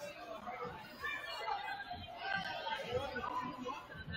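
Indistinct chatter of many people talking at once in a gym.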